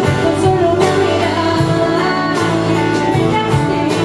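A woman singing with a strummed acoustic guitar in a live concert performance, held sung notes over steady regular strokes.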